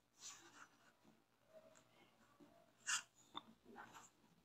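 Near silence: faint scratching of a pen writing on a paper workbook page, with a short breathy sound about three seconds in and a small click just after it.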